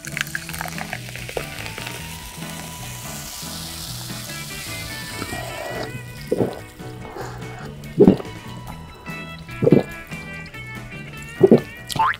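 Fizzy cola poured into a paper cup, a high hiss of carbonation, then four loud gulps about a second and a half apart as it is drunk, over steady background music.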